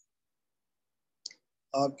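A pause in a man's speech: silence, broken by one short click a little over a second in, before his speech starts again near the end.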